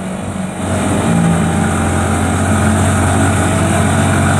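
Motorcycle engine running on the move, picking up about half a second in and then holding a steady note, with wind rush over it.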